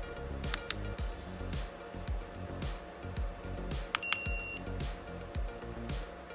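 Background music with a steady beat. About half a second in come two sharp clicks. Near four seconds in come two more clicks and a short high electronic beep of about half a second, from the i2C Face ID programmer as it finishes reading the Face ID flex data.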